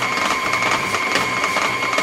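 KitchenAid tilt-head stand mixer running, beating stiff royal icing in its steel bowl: a steady motor whine with fast, even ticking from the gearing.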